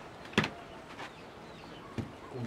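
A sharp knock of wood about half a second in, then a fainter one about a second in, as homemade wooden weights are set down on the ground.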